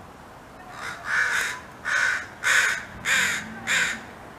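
Crow cawing: a soft call followed by a run of five loud, harsh caws, about one every half second.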